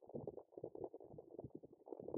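Wet sand squelching and sucking around a razor clam's shell as it is eased slowly out of its burrow by hand: a soft, irregular crackle of small wet pops.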